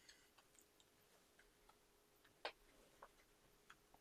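Near silence broken by a few faint ticks of a paper airplane being handled and creased by hand, the clearest about two and a half seconds in.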